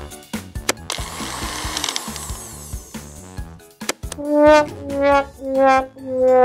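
A toy blender whirring for about two and a half seconds, mixing its play-dough contents, then a comic descending brass 'wah-wah' sound effect, its notes stepping down one by one, the last held. Background music plays underneath.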